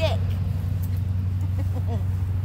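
Steady low rumble, with short voice sounds at the start and near the end.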